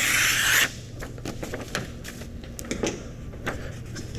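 Scissors cutting through a printed heat-transfer sheet, a short rasping slice of paper in the first second, followed by a few faint clicks of handling.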